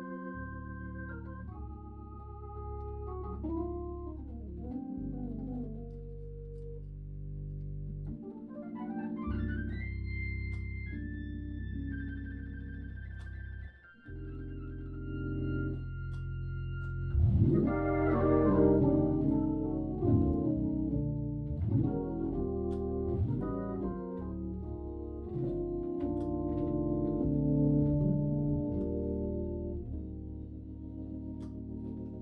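Hammond B3 tonewheel organ being played: sustained chords over held low bass notes, with quick rising sweeps up the keys about 8 and 17 seconds in. The playing grows louder from about 17 seconds on.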